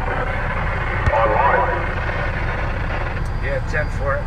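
Steady low rumble of a vehicle's engine and road noise heard from inside the cab, with brief indistinct speech about a second in and again near the end.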